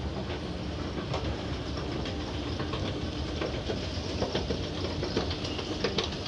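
Escalator running: a steady mechanical rumble with scattered clicks and clacks.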